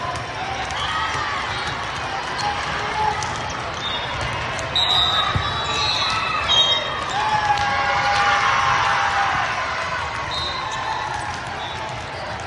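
Indoor volleyball rally: athletic shoes squeak on the sport-court floor and the ball is struck, sharply about five seconds in. Players' calls and spectators' chatter echo through a large, busy hall, louder in the middle of the rally.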